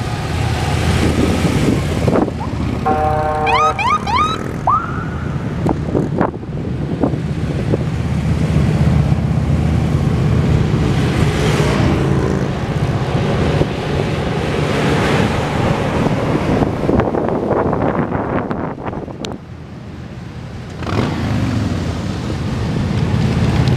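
A procession of police motorcycles passing at street speed, with a siren giving a few short rising whoops about three seconds in. A semi tractor-trailer goes by midway.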